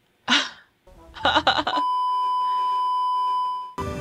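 A short noisy burst and a quick cluster of sharp hits, then a steady, high electronic beep held for about two seconds. It cuts off as soft music comes in near the end.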